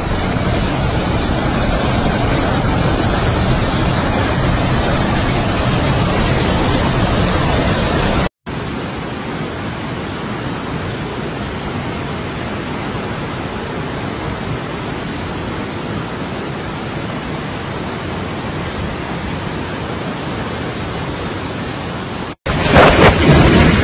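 Typhoon wind and driving rain, a loud steady noise that cuts off suddenly about eight seconds in. Then comes a steady, slightly quieter rush of floodwater pouring down a street.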